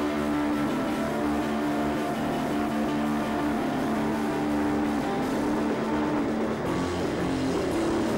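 Live stoner rock band playing: distorted electric guitar and bass hold a long, steady chord over the drums, and the riff changes about six seconds in.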